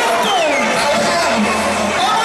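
Loud, continuous noise of a large street crowd, with voices coming over loudspeakers and rising and falling above it.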